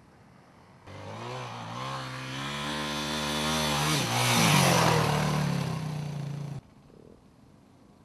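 Off-road motorcycle engine running under throttle, its pitch climbing with a brief dip halfway through and loudest just after the middle. It cuts in suddenly about a second in and cuts off sharply near the end.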